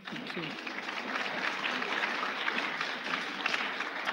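Audience in a hall applauding steadily, a dense patter of many hands clapping, with a few voices heard over it.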